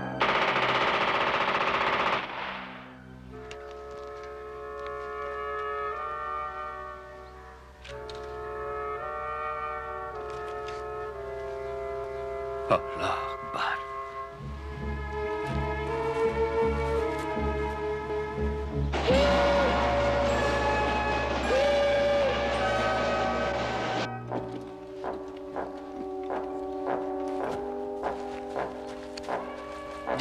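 Orchestral film score with sustained brass chords that change in steps, mixed with battle sounds: a loud burst of noise at the start, sharp gunshots about halfway through, and a long stretch of noisy, deep rumble after them.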